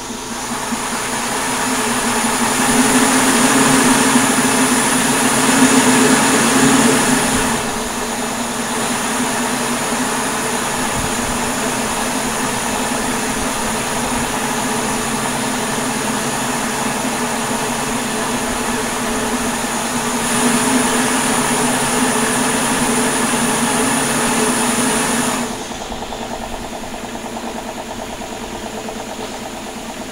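Homemade metal rotating-flow turbine, built from two stock-pot lids, running on compressed air: a steady rushing hiss with a low hum under it. It is louder for the first seven seconds or so and again for about five seconds in the last third, as the air flow changes. The turbine is running a little out of balance.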